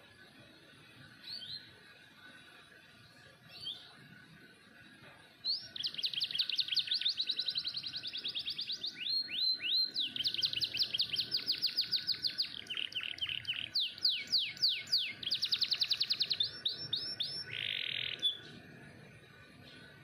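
Domestic canary singing: two short calls in the first few seconds, then a long song of fast trills and rapid repeated high notes starting about five seconds in and stopping a couple of seconds before the end.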